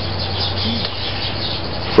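Faint chirping of small birds outside, repeating through a steady background hiss and low hum.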